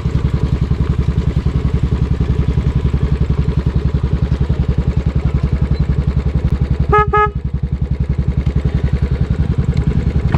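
Royal Enfield Classic 500 single-cylinder engine running at low speed with a steady, even beat. About seven seconds in, a motorcycle horn gives two short beeps.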